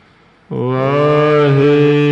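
A voice chanting Sikh scripture in a long held note, starting about half a second in after a brief quiet pause.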